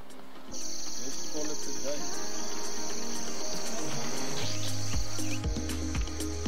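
Loud, steady, high-pitched chirring of an insect chorus, typical of crickets at dusk in the bush, starting suddenly about half a second in. Background music plays underneath, and a deep beat comes in near the end.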